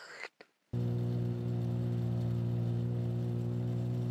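Snowmobile engine running at a steady, even pitch as it tows a sled over snow. It starts abruptly under a second in, after a brief silence.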